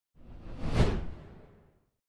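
A single whoosh sound effect for a logo reveal. It swells to a peak just under a second in, with a deep low end, then fades out.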